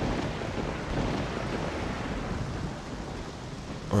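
Steady rushing noise with a low rumble, easing off slightly towards the end.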